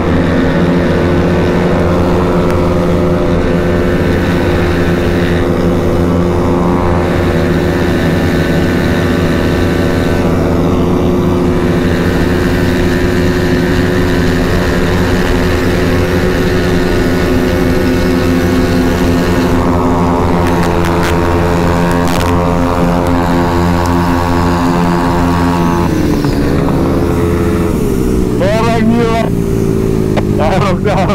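The Honda Vario scooter's engine runs at full throttle at high speed, a steady engine note with wind noise, held almost level while the speed climbs. The note shifts slightly down a few seconds before the end.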